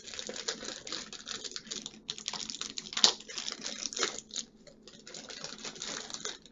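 Packaging crackling and clicking as it is handled and opened by hand, in fast irregular bursts, with a sharp click about three seconds in.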